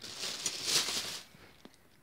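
Plastic carrier bags rustling close by for about a second, then fading away, with one faint click near the end.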